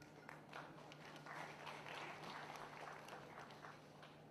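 Faint scattered applause from an audience, many separate claps that build to a thicker patter in the middle and thin out near the end, over a steady low hum.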